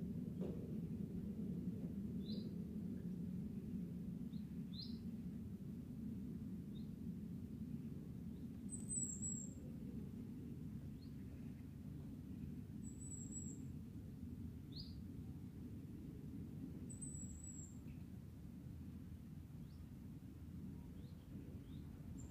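Wild birds calling faintly: scattered short high chirps, and a thinner, higher call repeated three times about four seconds apart, over a steady low background rumble.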